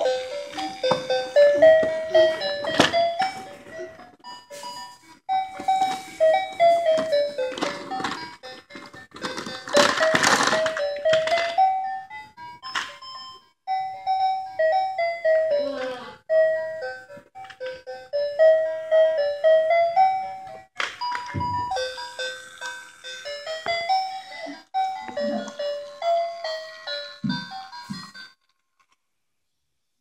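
Battery-powered plastic toy train playing an electronic melody of short stepping notes, which stops near the end. Occasional knocks of plastic toys being handled come through, the loudest about ten seconds in.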